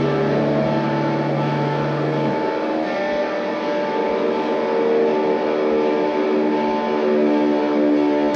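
Live rock band's electric guitars and bass holding sustained, droning notes with no drum hits, a build-up before the beat comes in. A low drone stops about two seconds in, and the held chords ring on.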